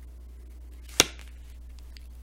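A single short, sharp click about a second in, over a low steady hum.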